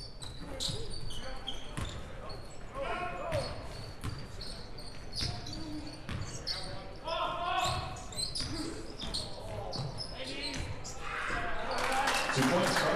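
Sounds of a basketball game in a large gym: a basketball bouncing on the hardwood court in repeated echoing knocks, with short high squeaks and voices calling out, and a rise in crowd noise near the end.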